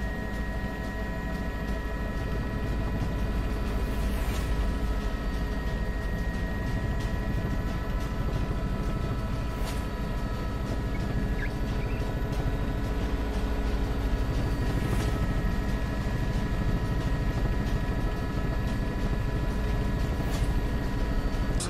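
Helicopter engine and rotor noise: a steady low rumble with a constant whine of several steady tones above it.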